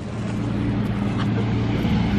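A motor vehicle engine running nearby, a steady low hum that grows slightly louder in the first half second and then holds.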